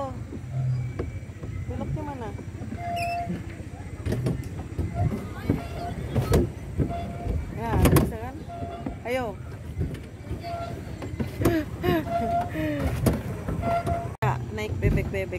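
Indistinct, distant voices and calls over a steady low rumble.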